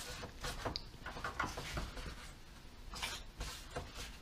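Inside of a removed BMW E46 valve cover being wiped clean by hand: faint, irregular rubbing and scratchy strokes with small clicks as the cover is cleaned of dirt and thick oil.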